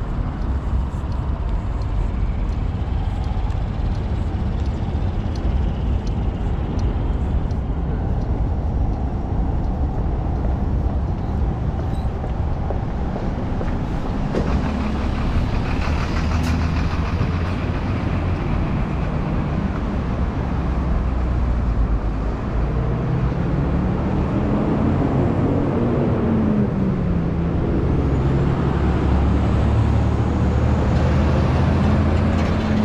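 City road traffic: a steady low rumble of passing cars, buses and trucks. Near the end a truck passes close by, its engine note rising and then falling.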